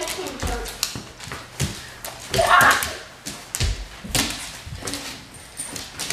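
Two excited dogs jumping up on people, their paws knocking and scrabbling on a wooden floor, with scattered thuds and knocks. Indistinct excited voices run under it, with one louder cry about two and a half seconds in.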